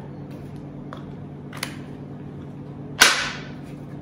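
Plastic legs of an OXO 2-in-1 go potty being folded flat: two light clicks, then one sharp plastic snap about three seconds in as a leg locks into place.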